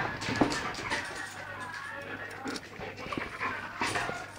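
Two dogs play-fighting at close range: dog whines and panting mixed with scuffling and a few sharp knocks near the start and end.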